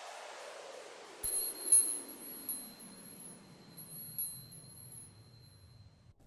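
Logo-sting sound effects: a whoosh sweeps steadily downward in pitch, and about a second in a sharp hit sets off high twinkling chime strikes over a held high tone. These ring on for a few seconds and fade away near the end.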